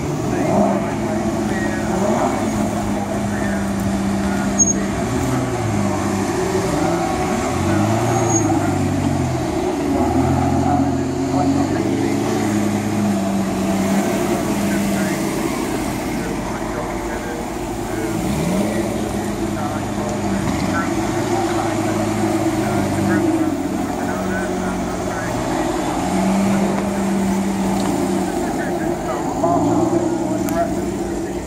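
Sports car engines running at low revs as cars creep past in a slow procession. The pitch holds steady for stretches, then rises and falls with light throttle. Crowd chatter runs underneath.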